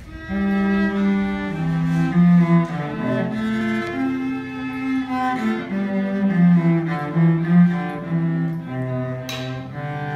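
Cello bowing a slow melody of sustained notes, joined by a higher bowed string instrument, starting just after the beginning. A short hiss cuts across the playing near the end.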